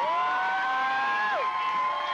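A woman's voice singing live through a microphone, holding a long high note that falls away about one and a half seconds in, while a second sustained high note carries on past it.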